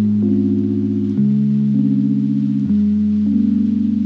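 Background music of slow, sustained chords that shift about every second and a half.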